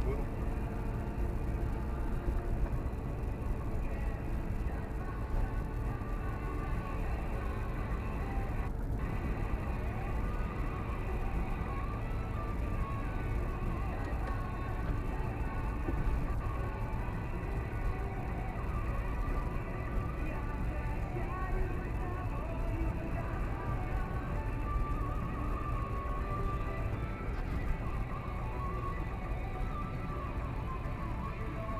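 Music with a singing voice playing from the car radio inside a moving car's cabin, over the steady low rumble of the engine and tyres.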